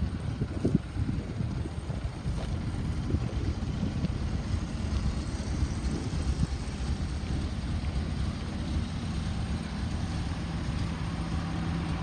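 2001 Toyota Avalon's 3.0 V6 idling with a low, uneven rumble; the engine has a slight misfire.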